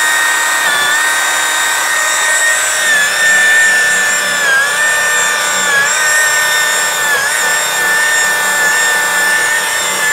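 DeWalt variable-speed polisher running with a steady whine as its pad buffs an aluminum truck wheel. Its pitch dips briefly three times in the middle, as the motor takes load.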